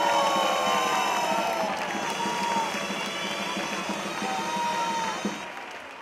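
Gralles, the Catalan double-reed shawms, playing the melody that accompanies a human tower as it is raised, over a cheering crowd. The sound fades down in the last second.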